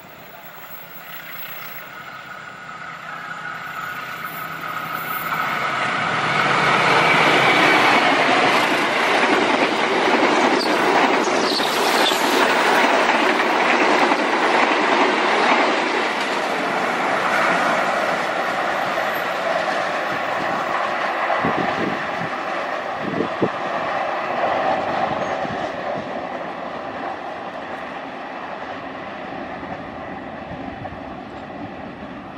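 Diesel-electric locomotive and passenger carriages passing at speed: the rush of wheels on rail builds over several seconds to a loud peak, holds for several seconds, then slowly fades as the train recedes, with a few wheel clacks over rail joints near the end.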